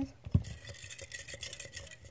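Fingers rummaging through folded paper slips in a clear cup, with many small rustles and clicks. There is a sharp knock about a third of a second in.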